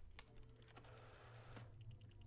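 Near silence: a faint low hum with a few soft, scattered clicks.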